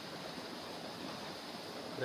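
Steady, even rushing background noise with no distinct events, like running water or wind.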